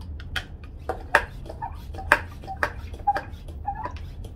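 Hand-pump pressure sprayer being pumped up: a run of quick plastic pump strokes, about two a second, each a sharp click with a short squeak. It is such a terrible noise.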